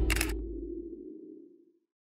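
A short, sharp click-like sound effect as the channel logo appears, over a low closing chord that fades away within about a second and a half, then silence.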